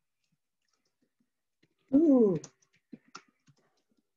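A few faint computer-keyboard key clicks from typing, mostly in the second half. About two seconds in comes one short, louder vocal sound lasting about half a second.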